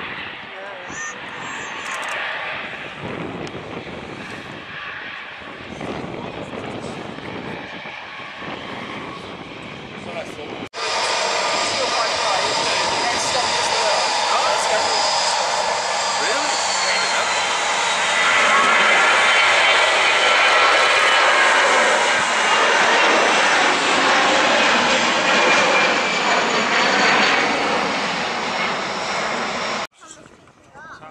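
Airbus A320-family airliners' jet engines on the runway. First a moderate, uneven engine noise as one jet rolls along. Then, after an abrupt cut, a louder, steady jet engine noise that builds over several seconds, with a high whine slowly falling in pitch.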